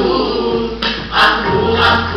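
A group of voices singing together, the ensemble of a musical-theatre song.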